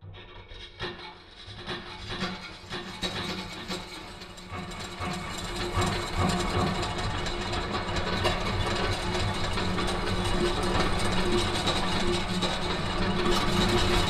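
Mechanical sound effects of turning metal gears. Scattered clicks and clanks swell over the first several seconds into a loud, steady, dense mechanical whir with a few held tones.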